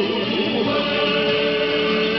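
A sung Chinese song with instrumental backing; a voice holds one long, steady note from about a third of the way in.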